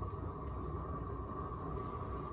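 Gas roofing torch burning steadily against the bottom of a water-filled copper pipe, heating it: an even, low rushing noise with no breaks.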